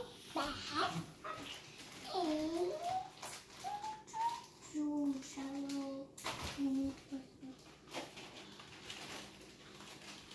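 A young child's wordless vocalizing: a few gliding sounds, then several short held tones, with a few light clicks. It tails off in the last couple of seconds.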